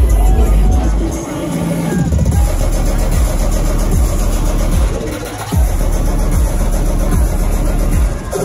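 Live bass-heavy electronic dance music played loud through a festival main-stage sound system, with deep sub-bass; the bass briefly drops out about a second in and again just past the middle.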